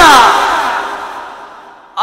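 A man's long sung call of "na'am" through a public-address loudspeaker ends on a falling glide in pitch. Its sound then dies away slowly over the next second and a half.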